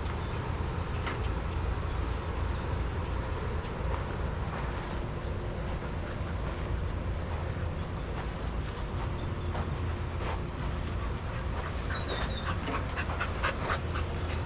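Dog panting in a play yard over a steady low rumble, with a run of short sharp sounds near the end.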